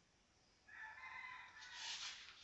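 A faint, drawn-out animal call at a steady pitch starts about two-thirds of a second in and lasts over a second. Near the end a paper book page rustles as it is turned.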